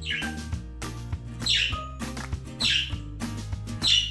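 Background music: an instrumental track with a steady beat over sustained bass notes.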